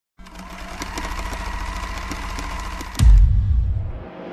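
Intro sound effect: a fast mechanical rattling and clicking with a thin steady whine for about three seconds, cut off by a deep bass boom that fades away.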